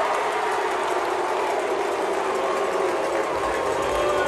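Large baseball stadium crowd cheering in a steady, loud roar of many voices after a big hit.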